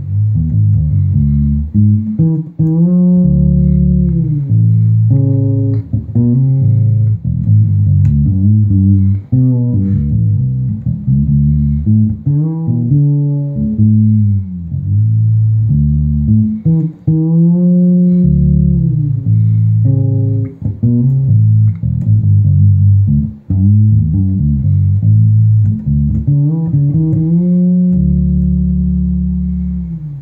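SX Ursa 3 fretless PJ electric bass (rosewood fingerboard) played on the neck P pickup alone with the tone knob fully rolled off: a melodic line of low notes joined by frequent sliding glides in pitch, with several long held notes, the last one fading out near the end.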